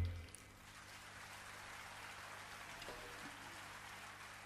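The orchestra's final chord cuts off in the first moment, leaving faint, even audience applause in a theatre hall, which begins to fade near the end.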